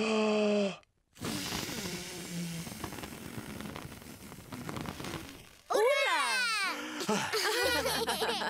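A cartoon character blowing out birthday candles: a short vocal intake, then one long breathy blow lasting about four and a half seconds that slowly weakens. A brief voiced cry follows, and music comes in near the end.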